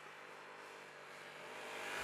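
A motorcycle approaching along the road, faint at first and growing louder near the end as it draws close.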